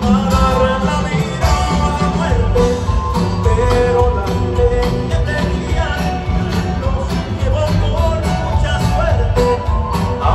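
Live band music played loud over a stadium sound system, with a singer's voice over keyboards, bass and drums.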